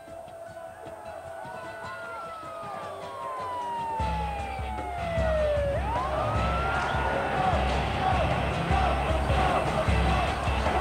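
A siren wailing: one long, slow fall in pitch, then a quick rise and hold. Crowd noise and a low rumble come in abruptly about four seconds in, getting louder.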